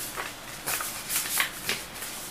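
Paper instruction manuals rustling and flapping as they are handled and leafed through: several quick rustles in close succession.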